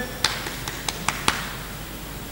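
A quick run of about six sharp taps or clicks, roughly five a second, over a faint hiss.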